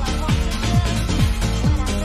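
Electronic dance music from a live club DJ set: a steady four-on-the-floor beat, the kick drum thumping a little over twice a second under sustained synth notes.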